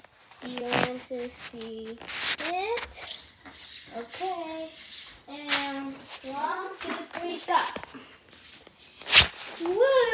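A child humming and vocalizing without words, held notes and sliding pitches, with a long downward slide near the end. Scattered knocks and rustles of a handheld camera being moved.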